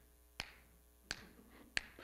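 Finger snaps, three sharp clicks at a steady beat about two-thirds of a second apart.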